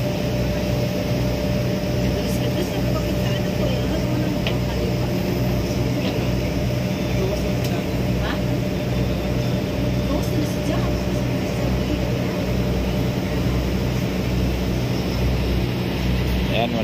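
Passenger ferry's diesel engines running at cruising speed: a steady deep drone that throbs at a regular rate, with a constant hum above it.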